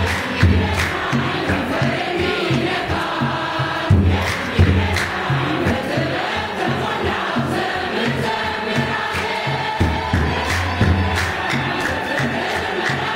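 A choir and congregation singing an Ethiopian Orthodox hymn together, with rhythmic hand clapping and a kebero drum beating a steady low pulse under the voices.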